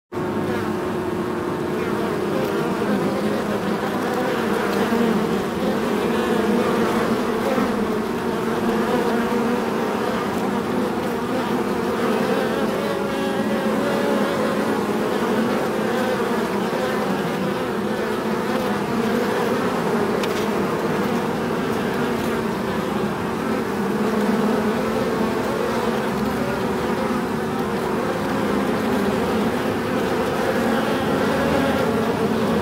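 Many bees buzzing together in a beehive: a steady, dense hum of overlapping wing-beat tones that waver slightly in pitch, with no pauses.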